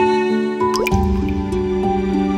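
Single liquid drip, a quick upward-gliding plink about three-quarters of a second in, followed by a low swell, over soft background music with held tones.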